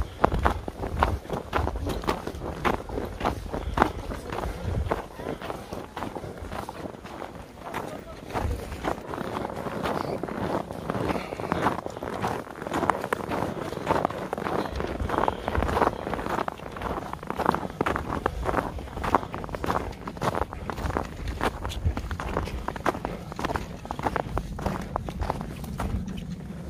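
Footsteps crunching and squeaking in deep, fresh snow, one step after another at a steady walking pace.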